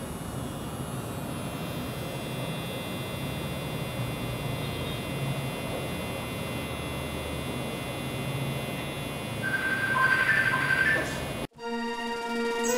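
Permanent-makeup machine pen running with a steady hum while drawing hairstrokes on a practice skin. Near the end it cuts off abruptly and music starts.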